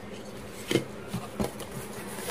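Cardboard shipping box and plastic packaging being handled: a few sharp knocks and clatters, the first the loudest, then a rustle. A steady buzzing hum runs underneath.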